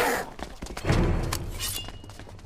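Glass shattering amid heavy crashing impacts: a hit at the start, a low crash about a second in, and a bright crash near the end that leaves a thin ringing.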